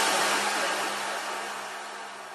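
The tail of a deep house track after the beat has dropped out: a hiss-like electronic noise wash over one low held note, fading steadily away.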